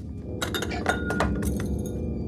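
A quick series of glassy clinks and knocks as objects at a fireplace and on its mantel are handled, over a low steady hum.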